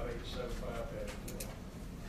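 Indistinct, low speech that trails off about a second in.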